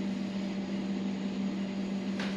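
A steady machine hum with an even hiss over it, unchanging throughout: room background noise.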